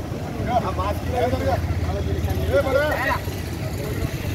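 Men's voices talking indistinctly in short bursts over a steady low rumble.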